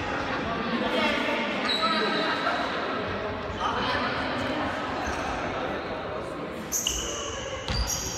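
A volleyball being struck twice near the end, with sneakers squeaking on the wooden gym floor as the rally gets going.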